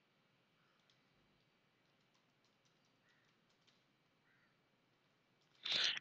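Faint keystrokes on a computer keyboard, a loose string of light clicks as a password is typed in, before a man's voice starts near the end.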